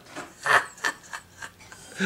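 Finger typing on an iPad 2's glass touchscreen keyboard: a handful of short scratchy taps, the loudest about half a second in.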